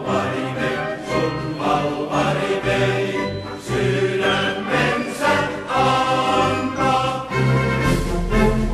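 A choir singing a Finnish soldiers' marching song over a steady low accompaniment.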